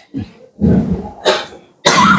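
A man coughing and clearing his throat: a few short, rough bursts in quick succession, the sharpest near the end.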